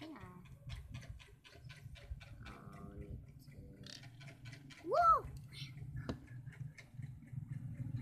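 Small plastic toys being handled on a hard floor, with light clicks and taps throughout. A child's voice makes a short sound near the third second, and about five seconds in a louder rising-then-falling vocal sound, the loudest moment.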